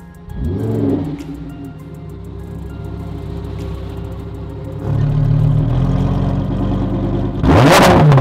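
Lamborghini Huracán's V10 engine started up, its revs flaring up and dropping back about half a second in, then idling steadily. Near the end comes a sharp, loud blip of the throttle that rises and falls. Music plays faintly underneath.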